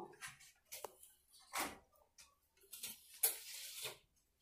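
Floor cloth rubbed by hand into a floor corner, a few short wiping strokes with a small click about a second in, the longest stroke near the end.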